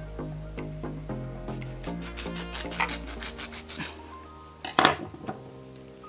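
A serrated knife sawing through a lime in short rasping strokes, with a louder clack just before the end. Background music plays throughout.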